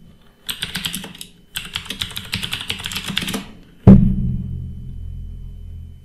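Computer keyboard typing in two quick runs of key clicks, then a sudden loud thump about four seconds in, followed by a low rumble that fades away.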